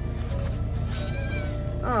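A kitten meowing once, a single drawn-out cry about a second in.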